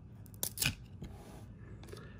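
Baseball cards being handled, with a card slid off the front of the stack in a couple of brief papery swishes about half a second in and a fainter one near the end.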